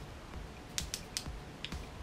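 A few small, sharp plastic clicks from a pen-style refillable stick eraser being worked in the hands, its mechanism clicked to push out the eraser refill.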